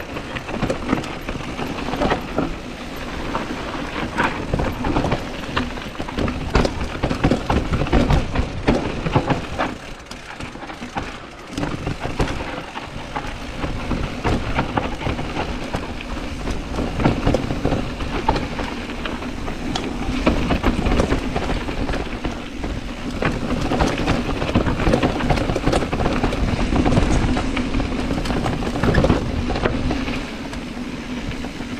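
Mountain bike (Specialized Status) riding down a rough trail: tyres crunching over dirt and rocks, with the chain and frame rattling in a steady clatter of knocks. It eases off for a couple of seconds about a third of the way through.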